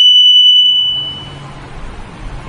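A steady, high-pitched electronic beep, one unbroken tone that cuts off suddenly about a second in.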